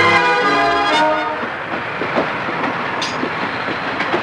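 Soundtrack of a film trailer: a sustained chord dies away about a second in, giving way to a steady rattling rumble with scattered sharp clacks.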